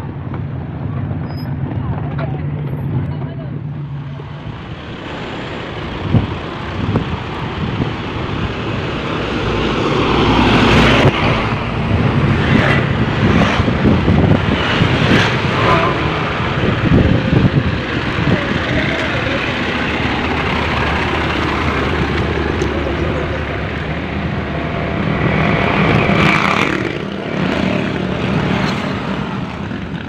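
A Toyota Land Cruiser 40-series off-roader's engine running as it rolls over gravel. From about ten seconds in, a louder stretch of vehicle and outdoor noise follows.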